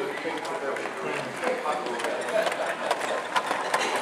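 Chatter of voices in a hall over a long model goods train of wagons rolling past on the track, its wheels giving a run of irregular short clicks that come thicker in the second half.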